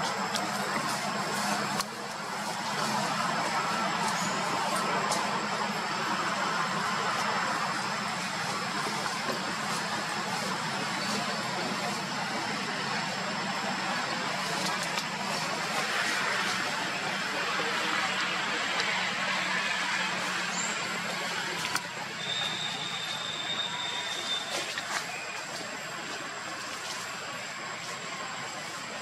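Steady outdoor background noise, an even hiss-like wash with a constant thin high-pitched tone. A brief higher whistle-like tone sounds about three-quarters of the way through.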